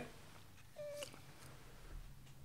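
Quiet room tone broken by one faint, brief squeak-like tone a little under a second in, followed by a faint click.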